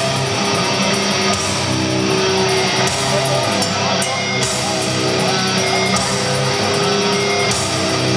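Heavy metal band playing live, loud and steady: distorted electric guitars over bass and drums in an instrumental passage without vocals.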